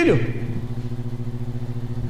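A steady low mechanical hum made of several pitched tones, with a slight rapid flutter in loudness.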